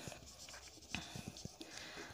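Dry-erase marker writing on a whiteboard: faint, short strokes of the felt tip as a word is written.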